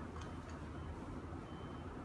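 Steady low hum with a few faint light clicks of plastic tools being handled against a phone, and a brief faint high tone late on.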